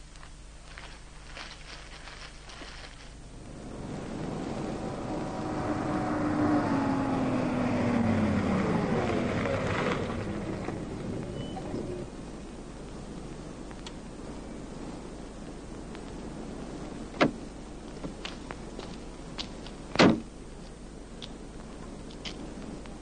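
A saloon car driving in, its engine getting louder and then falling in pitch as it slows to a stop, and going quiet about 12 s in. Later two sharp knocks, the second louder, about 17 and 20 s in: a car door opening and slamming shut.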